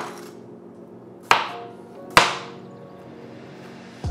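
A kitchen knife chopping through peeled cucumber onto a cutting board: three sharp chops, one right at the start, one just over a second in and one a second later, each with a short ring.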